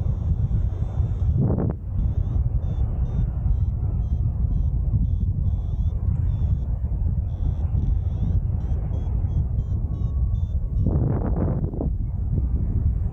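Airflow rushing over the microphone in flight under a paraglider, with a run of short, high pitched beeps of uneven spacing over it, typical of a variometer signalling lift. A brief louder noise comes about a second and a half in and again near the end.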